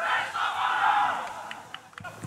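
A team of footballers in a huddle shouting their rallying cry together, many voices at once, dying away after about a second and a half.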